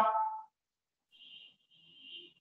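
A man's voice finishing a word in the first half-second, then near silence broken by two faint, short high hisses.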